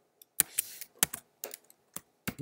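Computer keyboard keystrokes: a handful of separate key clicks at an uneven pace, some coming in quick pairs.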